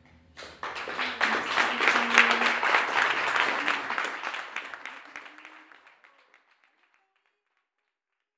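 Audience applauding at the end of a song. The clapping starts about half a second in, then thins out and dies away by about six seconds in.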